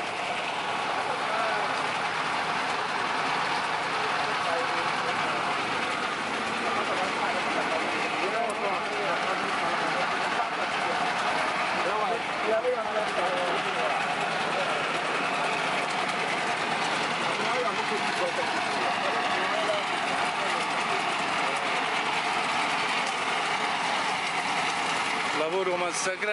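An engine running steadily, with people talking in the background.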